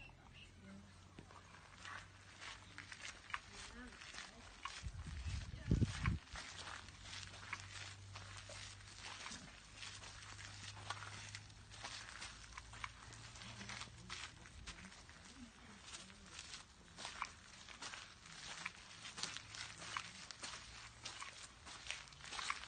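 Footsteps on gravel, an irregular run of small crunches and clicks throughout, over a faint low steady hum, with a brief loud low rumble on the microphone about five seconds in.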